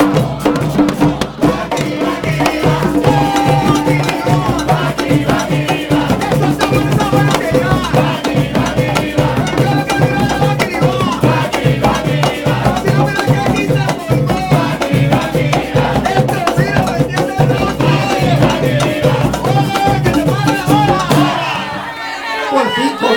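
Puerto Rican plena played on panderos, hand-held frame drums, in a fast, continuous beat. Voices sing along over the drumming.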